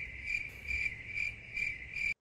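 Cricket-chirping sound effect: a steady, high chirp repeating about two to three times a second, the stock gag for an awkward silence while someone is stuck for an answer.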